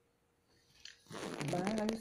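Near silence, then about halfway in a woman's voice starts, rising in pitch, with sharp mouth clicks while she is still chewing a mouthful of food.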